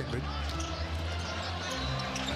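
Arena music with a steady low bass, and a basketball dribbled on the hardwood court.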